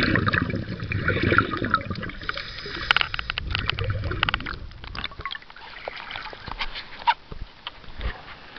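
Water heard through a submerged camera: muffled bubbling and sloshing with many sharp clicks. It grows quieter about halfway through, leaving scattered clicks.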